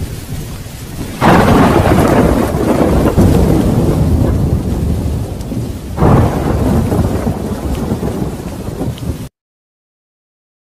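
Heavy rain with two rolls of thunder, the first about a second in and the second about six seconds in, each loudest at its start and trailing off. The sound cuts off suddenly near the end.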